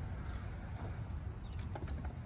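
Steady low outdoor street rumble, with a few faint clicks about one and a half seconds in.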